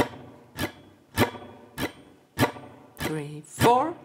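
Hollow-body archtop electric jazz guitar strummed with steady downstrokes, about seven strums, each chord ringing briefly before the next. Every other strum is harder: the two-and-four accent of vintage swing comping.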